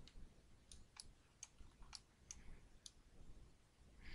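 Faint computer mouse button clicks, about half a dozen spaced irregularly over the first three seconds, against near silence.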